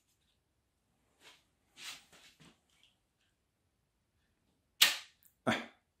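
Faint paper rustling as a thick paper plane is pushed into the slot of a 3D-printed rubber-band launcher, then one sharp snap near the end as the rubber band is released. The plane catches on the launcher instead of flying off: a misfire.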